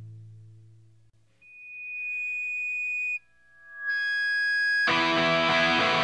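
Punk rock recording at a change of track: a low held note rings out and fades to near silence, then two held high tones sound one after the other, the second swelling. About five seconds in, the full band comes in loud with distorted electric guitars.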